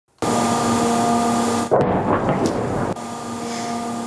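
A steady droning hum, then, a little under two seconds in, a sudden loud explosion with a rumbling tail: a drone blowing up as it falls after being hit by air defences. The droning hum returns near the end.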